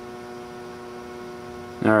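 Steady electrical mains hum from the arc-lamp setup's power equipment, with a man starting to speak right at the end.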